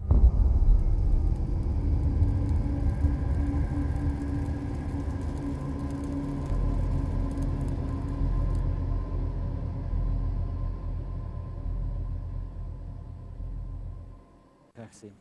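Channel ident sound effect: a deep, steady rumble with a few faint held tones above it. It starts suddenly, fades slowly and cuts off at the end.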